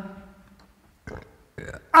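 A short pause in a man's speech: his last word trails off, then come two brief throat noises, about a second in and again near the end, before he speaks again.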